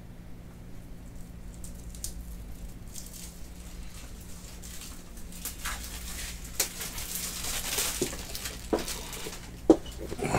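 Rustling and light clicks of trading cards and plastic top loaders being handled on a table. The handling grows busier in the second half, with a sharper click just before the end, over a faint steady low hum.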